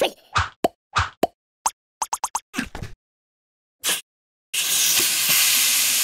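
Cartoon sound effects: a quick run of short plops over the first three seconds, then a steady rush of hissing air from about four and a half seconds in as the flat blue inflatable fills back up.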